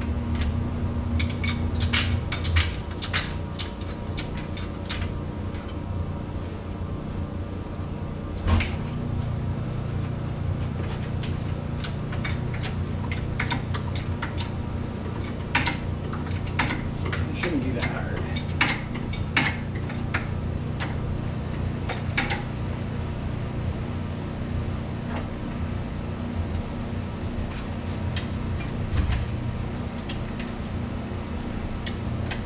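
Metal clinks and knocks of hand tools working the rear shock spring adjusters on a Polaris HighLifter 850 ATV: scattered sharp clicks in bunches, with one louder knock about eight seconds in, over a steady low hum.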